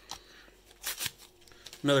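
Trading cards and their plastic packaging being handled: a couple of brief rustles about a second in.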